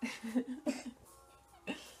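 A person's voice: faint, brief vocal sounds at first, then a short breathy burst near the end, like a cough.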